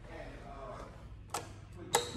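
Two sharp clicks about half a second apart near the end, the second much louder: an Otis black elevator hall call button being pressed, over faint voices.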